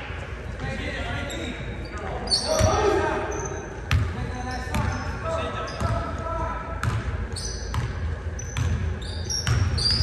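A basketball dribbled on a hardwood gym floor, thumping about once a second, with sneakers squeaking on the floor in short clusters as players run up the court.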